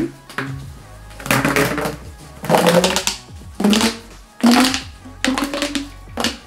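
BedJet 3's fabric-covered accordion air hose being pushed back together, crinkling and rustling in five or six separate pushes as the pleats collapse. Background music plays underneath.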